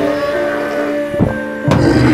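Cartoon score music with held notes. A sudden hit comes near the end, and a deeper, louder bass note enters with it.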